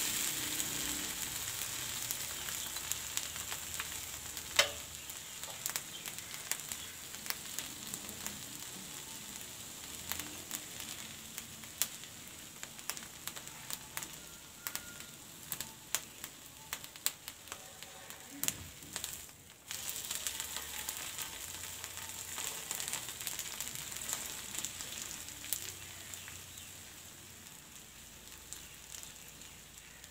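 An egg frying in oil on a hot flat pan: a steady sizzle with scattered pops and crackles that slowly dies down toward the end. A single sharp click sounds about four seconds in.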